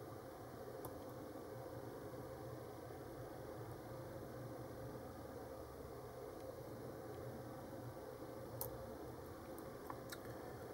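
Lock pick working the pin tumblers of a brass Cocraft 400 padlock: just a few faint small clicks over a steady low hiss and hum.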